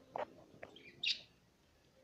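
Budgerigar chirping: a short, softer call just after the start, then a single higher chirp about a second in.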